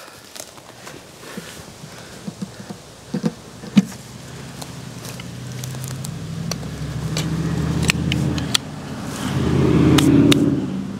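A few light clicks and knocks of hands handling a plastic box. Then a low engine drone swells over several seconds, dips briefly, and swells again to its loudest near the end, the way a passing motor vehicle sounds.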